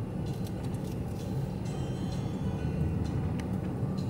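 Steady low road and engine rumble inside a moving car's cabin.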